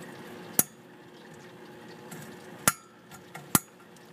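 Three sharp clicks about a second or two apart, from a reptile heat lamp's switch being tried; the lamp does not come on, which the owner puts down to overheating.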